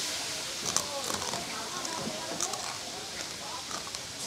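Small cooked crabs being chewed shell and all, with a few sharp crunches, over faint background chatter.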